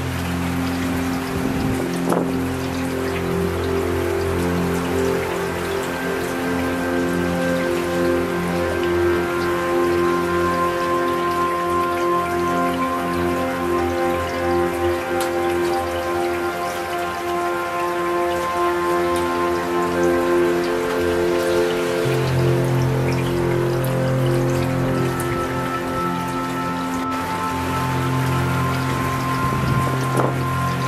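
Steady rain falling, with slow ambient music of long held notes laid over it; a new low bass note comes in about two-thirds of the way through.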